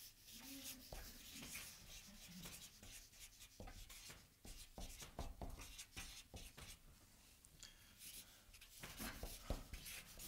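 Faint squeaking and scratching of a marker pen writing on flipchart paper in many short strokes.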